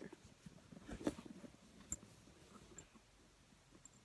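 Faint handling noise: a few soft knocks and sharp little clicks as the camera case and phone are moved about. The sharpest clicks come about one and two seconds in.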